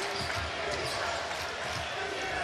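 Basketball dribbled on a hardwood court over steady arena background noise.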